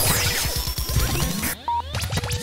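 Radio station jingle: electronic music with whooshing sweeps, a short beep near the end and a fast pulsing low beat.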